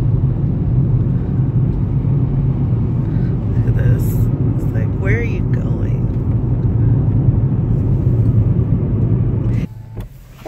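Steady low road rumble of a car driving, heard from inside the cabin: engine and tyre noise on a wet road. It cuts off suddenly just before the end.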